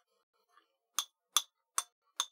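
A metal spoon clinking against a container of yogurt as it is scooped, three sharp clinks in quick succession starting about a second in.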